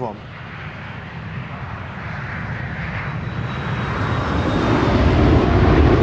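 Jet airliner passing low overhead, its engine noise growing steadily louder, with a faint high whine. A deep rumble swells in near the end.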